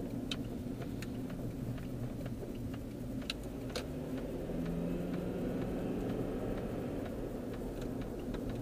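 Car engine and road noise heard from inside the moving car, with scattered light ticks and clicks. About halfway through, a steady hum comes up and the noise gets a little louder.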